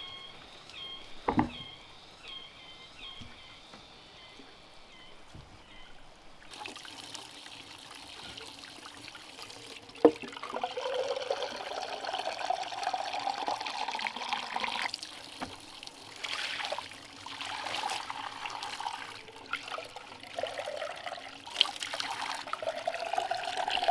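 A thump about a second in. Then, from about six seconds, water from a bamboo pipe runs and splashes into a hollowed-log trough, with a sharp knock near the middle. Twice a rising tone is heard as a bamboo tube fills under the stream.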